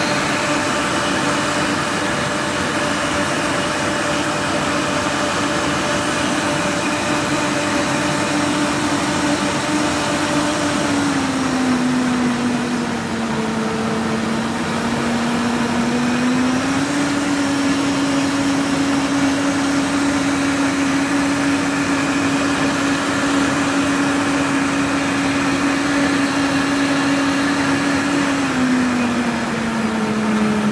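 Commercial blender motor running steadily, blending a milk-and-fruit milkshake in its jar. Its pitch sags for a few seconds about a third of the way in, comes back up, and drops again near the end.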